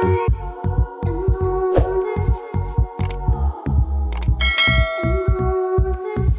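Background music with a steady deep beat and bell-like tones, with a bright chime about four and a half seconds in.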